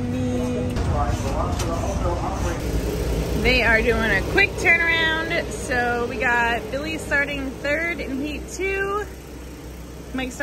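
A high-pitched voice talking in short phrases, over a low steady hum.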